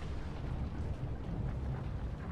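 Deep, steady rumble of a volcanic-eruption sound effect playing over loudspeakers in a large exhibition hall.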